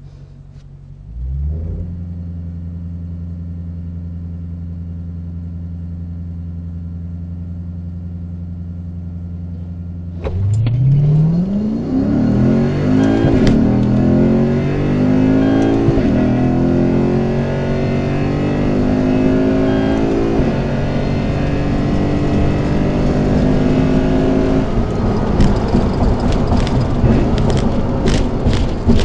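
Lexus IS F's 5.0-litre 2UR-GSE V8 with a Borla cat-back exhaust, heard from inside the cabin. About a second in it rises from idle to a steady higher hold against the brakes for a brake launch. About ten seconds in it launches at full throttle, the pitch climbing again and again and dropping at each upshift through a quarter-mile pass, until the throttle lifts near the end amid a string of sharp clicks.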